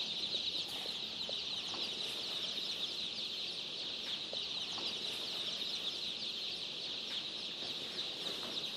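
A crowd of day-old chicks peeping all at once, a steady, dense chorus of high-pitched cheeps.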